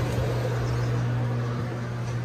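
Subway train standing at the platform with its doors open: a steady low electrical hum over a background rush of train and station noise.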